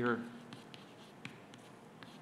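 Chalk writing on a blackboard: a scatter of short, sharp taps and brief scratches as symbols are written.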